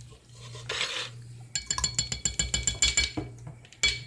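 A measuring spoon stirring in and clinking against a glass jar. A quick run of ringing clinks lasts about a second and a half, with one more clink near the end.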